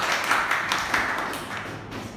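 A small group of people clapping in a classroom: dense, quick hand claps that thin out near the end.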